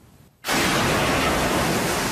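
A loud, steady hissing gush, an animated sound effect of blood spraying high out of a body, coming in suddenly about half a second in.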